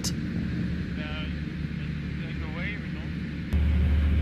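Single-engine light aircraft's engine droning steadily, heard inside the cockpit, with faint voices over it. About three and a half seconds in, after a click, the drone jumps suddenly louder.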